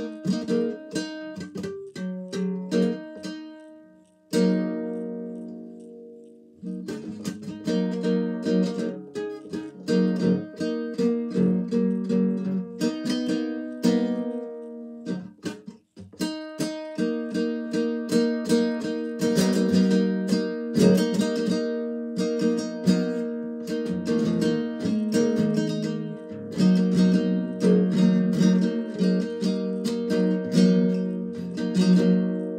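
Acoustic guitar strummed by hand, a steady run of chords with one chord left to ring out about four seconds in and a brief break about halfway through.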